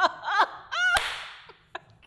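A woman laughing in high-pitched, squealing whoops, with a sharp slap, like a hand clap, about a second in, then a few short breathy chuckles.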